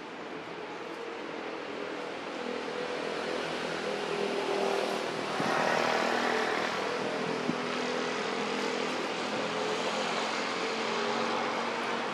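Engine drone, a steady hum that grows louder over the first five seconds or so and then holds.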